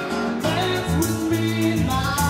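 A live band playing an instrumental passage: acoustic guitar, electric bass, drums and keyboard. The bass moves between notes about every half second under regular cymbal strokes.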